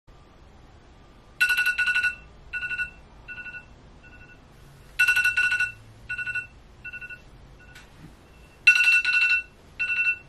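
Smartphone alarm ringing: a bright electronic beeping phrase that repeats about every three and a half seconds, loud at first each time and then fading away in quieter echoes.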